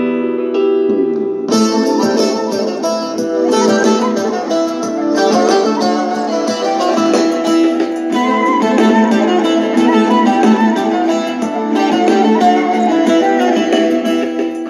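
Sony CFD-S03CP portable boombox playing a song through its built-in speakers, guitar-led music. About a second and a half in, a soft keyboard passage gives way to fuller, brighter music.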